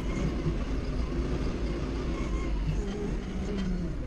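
Doosan 4.5-ton forklift engine running steadily as the forklift drives, heard from inside the cab.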